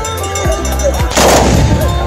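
A volley of black-powder muskets fired together by a charging line of tbourida horsemen, heard as one loud blast a little past halfway through, over background music.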